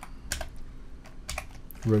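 Computer keyboard keys clicking as a word is typed: a handful of separate keystrokes at an uneven pace.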